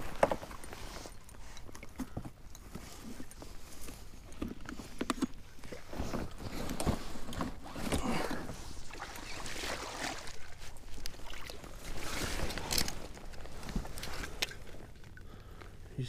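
Dry marsh grass rustling and scraping close to the microphone as someone pushes out through a grass-covered kayak blind, in irregular brushing bursts that grow louder about six seconds in and again near twelve seconds.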